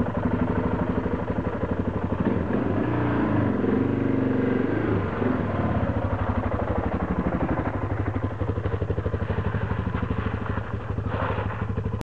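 Dirt bike engine running as the bike pulls away and rides off, the revs rising and falling for a few seconds early in the run, then holding steady.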